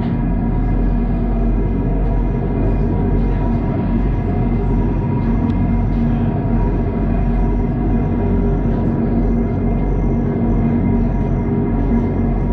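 The incline railway's hoist machinery running: a large electric motor driving the cable wheels gives a loud, steady hum with several fixed tones over a low rumble.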